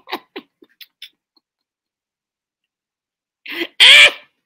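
A man laughing in short breathy bursts, then about two seconds of dead silence, then a loud cough near the end.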